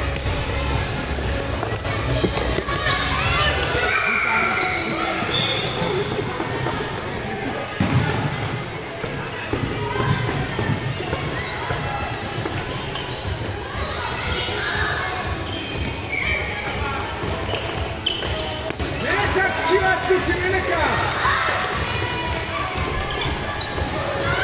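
Youth floorball game in a sports hall: sharp clacks of sticks striking the plastic ball, with young players shouting to each other.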